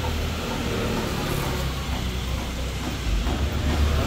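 A steady low rumble, with faint low voices at times over it.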